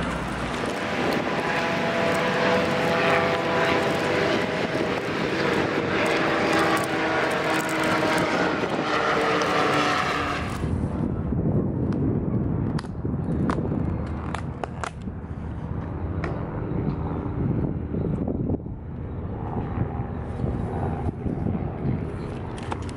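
A loud, steady mechanical drone with several held tones, like a passing engine, stops abruptly about ten seconds in. What follows is quieter outdoor hiss with scattered crinkles and clicks from a paper takeout bag being handled.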